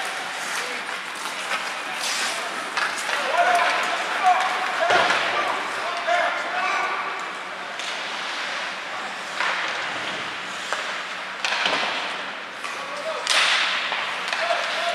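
Ice hockey play on an indoor rink: skate blades scraping and hissing on the ice, with sharp clacks of sticks and puck, and players' voices calling out.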